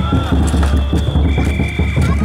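Big taiko drum beaten in a fast, steady rhythm inside a futon-daiko drum float (chousa), with voices calling over the beat.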